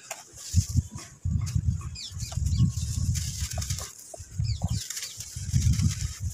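Dry red sand lumps squeezed and broken by hand, giving irregular bursts of muffled, low crunching and crumbling. Faint short chirps, likely birds, sound a couple of times in the background.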